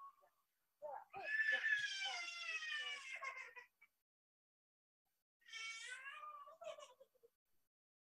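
Two faint, drawn-out, high-pitched calls, each sliding slowly down in pitch. The first is about a second in and lasts over two seconds; the second, shorter one comes about two-thirds of the way through.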